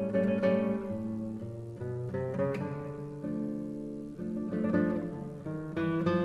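Solo classical guitar playing plucked chords and single notes, each struck a second or less apart and left to ring.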